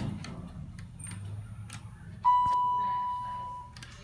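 ThyssenDover elevator's electronic chime: one clear ding that starts a little over two seconds in and fades away over about a second and a half. A sharp click comes just after it starts and another as it dies out.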